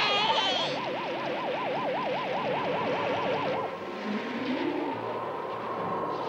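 Cartoon wind sound effect: a steady rushing gale, opening with a whoosh. Over it a tone warbles up and down about five times a second and stops a little past halfway.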